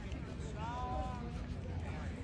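Background chatter of people's voices over a low outdoor rumble, with one brief, high, arching call about half a second in.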